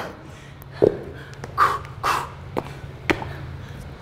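A person working out with dumbbells: two hard, breathy exhalations about midway through, with a few sharp knocks and taps around them, over a steady low hum.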